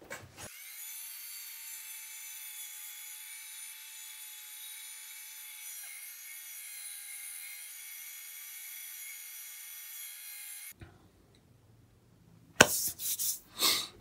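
Parkside wood lathe running with a cutting tool worked against the spinning wooden piece, heard faint and thin with a steady whine. It cuts off suddenly about three quarters of the way through.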